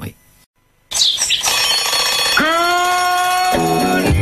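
Programme bumper jingle: after a brief near silence, a rising whoosh opens into music. A long held note slides up at its start, and the music turns rhythmic near the end.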